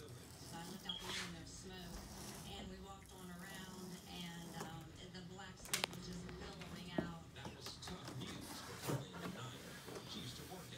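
Cardboard iMac box being pulled open: cardboard scraping and rustling, with a few sharp knocks from about halfway through, under faint quiet talk.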